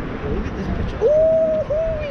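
A person's voice held in two long, high hoot-like notes starting about a second in, the second sliding down at the end, in a sing-song drawl.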